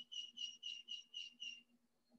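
A quick series of six short, high-pitched chirps, about four a second, then quiet.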